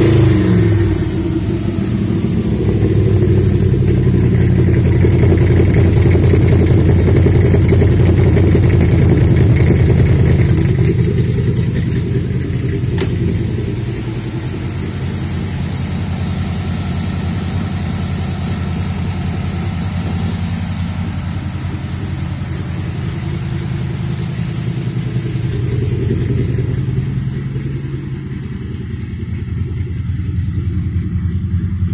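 1969 Chevrolet Corvette's V8 engine running steadily at idle. It is louder for about the first ten seconds, then quieter for the rest.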